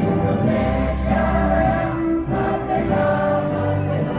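A choir singing a slow song in long held notes, with musical accompaniment.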